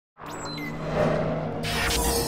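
Intro music of a logo animation, with a few high gliding tones early and a swelling whoosh coming in near the end.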